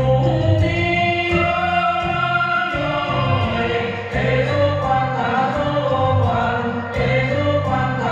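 A male singer sings a Vietnamese folk-style song through the stage sound system over instrumental accompaniment, holding long drawn-out notes.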